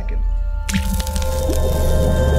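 Logo-sting sound effect with music: a deep bass swell and held tones, joined about two-thirds of a second in by a sudden splashy hiss, matching a paint-splash animation.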